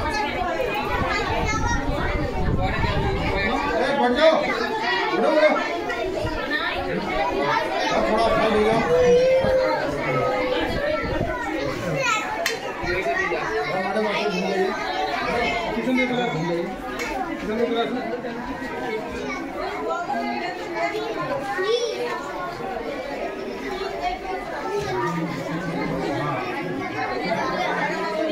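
Crowd chatter: many voices talking over one another in a room, with no single clear speaker.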